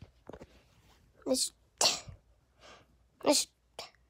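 A person's voice making several short, breathy vocal bursts, sneeze-like exclamations, with brief quiet gaps between them.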